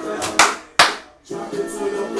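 Two loud, sharp hand claps close together, over background music.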